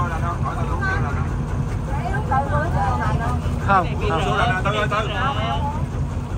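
A boat's engine running with a steady low rumble as the boat moves along the river, with people's voices talking over it.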